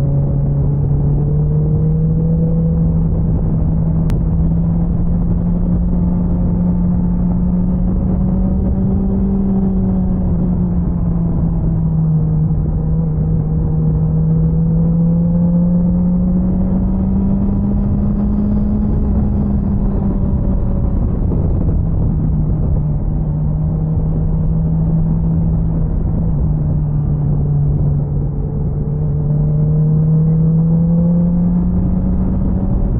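BMW S1000XR's inline-four engine running at a steady cruise under the rider, its pitch drifting slowly up and down with the throttle through the bends, over a constant rush of wind noise.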